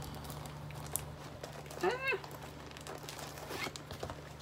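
Faint rustling and handling noises as a folded item is picked up, with a short vocal 'ah' about two seconds in, over a steady low hum.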